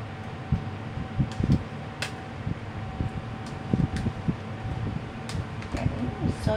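Kitchen range-hood exhaust fan running with a steady hum, with a few light clicks and knocks over it.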